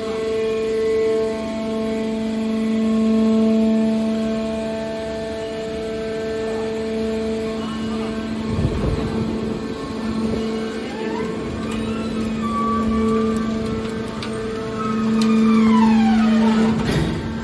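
Hydraulic power unit of a scrap-metal baler running with a steady hum. About halfway through there is a deep rumble, and near the end a whine that rises and falls.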